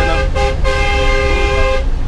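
Minibus horn heard from inside the cabin: a short toot, then one long blast of just over a second, over the low rumble of the engine. The driver honks to warn people ahead that the bus is coming round a bend on the mountain road.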